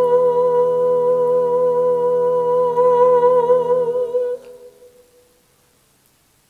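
A female soloist's voice holds the long final note of a hymn with a slight vibrato, over a sustained low accompanying chord. Both stop about four seconds in, and the note dies away in the church's reverberation, leaving quiet.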